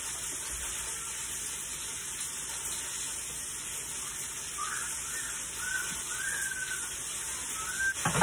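Steady sizzling of food frying in a pan, with a few faint short chirps in the second half.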